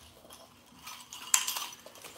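Metal chain of a pair of nunchucks clinking as the sticks are handled: a few light metallic clinks, the sharpest about two-thirds of the way in.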